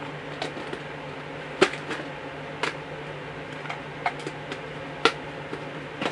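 Small parts being handled, put down and picked up on a wooden desk: several light clicks and knocks, the sharpest about one and a half seconds in and about five seconds in, over a steady low hum.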